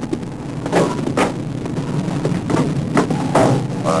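About five short, drum-like knocks at uneven intervals over a steady low hum.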